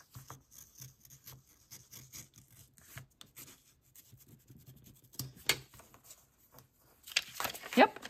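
Snap-off craft knife blade sliding along the edge of a paper envelope on a cutting mat, slicing it open: a run of faint, quick scraping ticks. Near the end comes a louder rustle as the cut paper is pulled apart.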